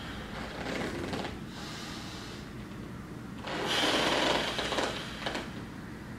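A man's deep, audible breathing while stretched out on his back: a softer breath about half a second in, then a louder, longer breath about a second long in the middle.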